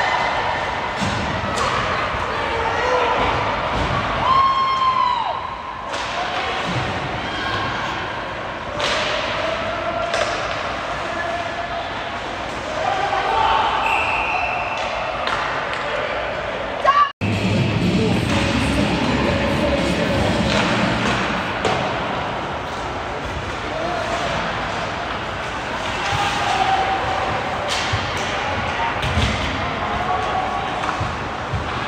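Ice hockey play in a nearly empty rink: sharp knocks and thuds of sticks, puck and bodies against the boards, mixed with scattered shouts from players and coaches, echoing. The sound drops out for an instant a little past halfway.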